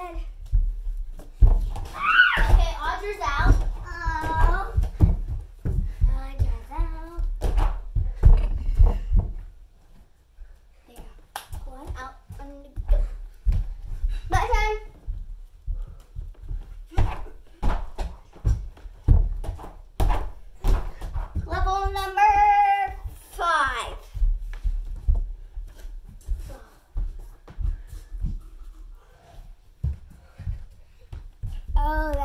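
A child's voice in a few short bursts among many dull thumps and knocks, from feet on a floor mat and pillows and a plastic laundry basket being stacked.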